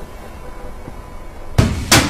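Low steady background hum, then near the end two loud, sharp knocks about a third of a second apart.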